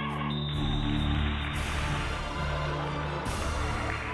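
Background music: an instrumental track of held low notes that change every second or so.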